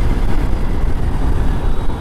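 Steady wind rush and road noise from riding a Yamaha R15 V3 motorcycle, heaviest in the low rumble of wind buffeting the helmet-mounted mic.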